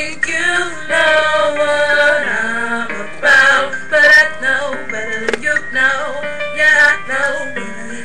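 A song: a voice singing a melody with music, carrying straight on through the stretch between lyric lines.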